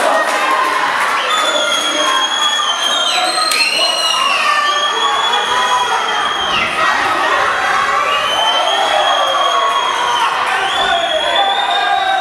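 Spectators cheering and shouting encouragement during a boxing bout, with several high-pitched voices holding long shouts over the crowd noise.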